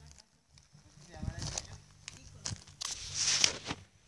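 Rustling and scraping of a phone being handled and turned around against clothing, loudest about three seconds in, with brief faint voices.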